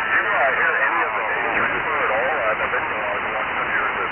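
Garbled single-sideband voice on the RS-44 satellite downlink from an ICOM transceiver, off-tune and unintelligible as the signal is briefly lost. A falling tone slides down in the first second while the receive frequency is being retuned.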